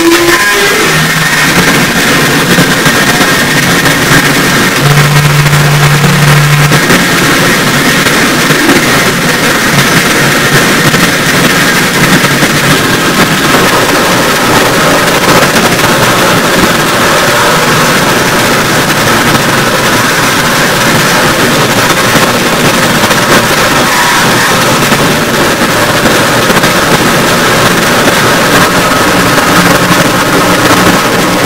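Harsh noise electronics played live: a loud, dense wall of distorted noise filling the whole range, with a low held tone under it in the first several seconds and faint held higher tones through it.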